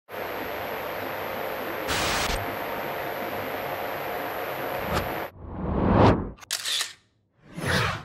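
Old CRT television static: a steady hiss with a thin high-pitched whine, briefly louder about two seconds in, ending with a click and cutting off just after five seconds. Then two rising whooshes, with a short burst between them.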